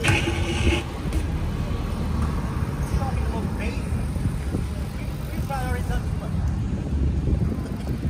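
Rumble of wind buffeting a microphone carried on a moving bike, with brief indistinct voices near the start and again about two-thirds of the way in.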